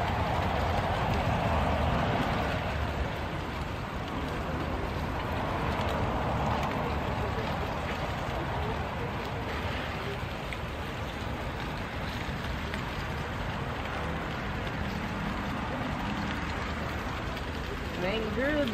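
Food sizzling and crackling on a grill over open flame, a steady hiss with faint voices in the background.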